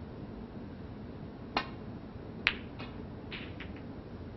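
A snooker cue tip strikes the cue ball with a click, and about a second later the cue ball hits an object ball with a sharper, louder click, followed by several fainter clicks of balls touching balls and cushions.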